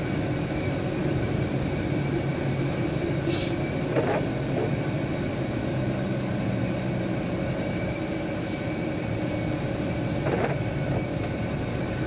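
Steady engine hum and road noise heard from inside a moving vehicle's cabin as its tyres run on a wet road, with a couple of brief hisses.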